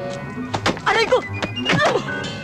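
Film fight-scene soundtrack: background music under a few dull thuds of blows or bodies hitting a wooden wall, with short wordless cries.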